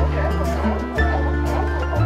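Background music with held low notes changing about once a second, over sea lions barking.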